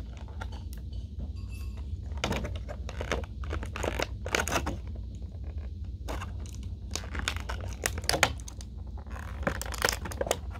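Clear plastic packaging insert from a Funko Pop box crinkling and crackling as it is handled, in irregular bursts.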